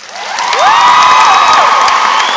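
Audience applause and cheering breaking out at the end of an a cappella song, building quickly to loud and steady, with whoops rising and falling over the clapping.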